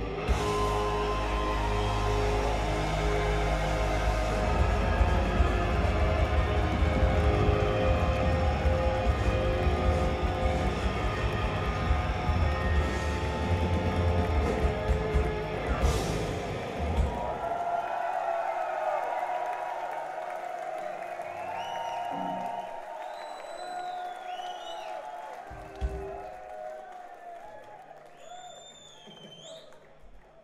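Hard rock band playing live with electric guitars, bass and drums, driving through a song's final section and ending on a sharp final hit about halfway through. The crowd then cheers and whistles as the last notes die away.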